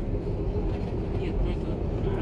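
Cabin noise of an airliner rolling down the runway just after landing: a steady low rumble from the engines and the wheels on the runway.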